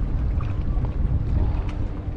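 Wind rumbling on the microphone over water moving against a kayak's hull, with a few faint clicks.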